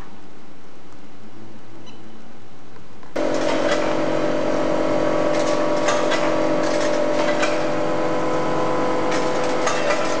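Electronic 24-tunnel pill counting machine starting up about three seconds in: its vibratory feeder runs with a steady hum, and pills rattle and click as they travel along the stainless steel channels.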